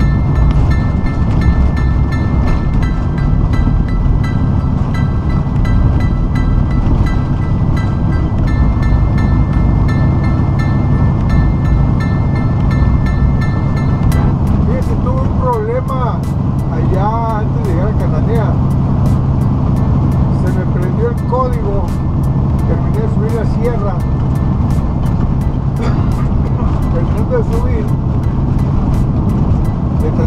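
Steady low drone of a semi truck's engine and tyres, heard inside the cab while cruising on the highway. About halfway through, a voice with music and a quick regular tick comes in over the drone.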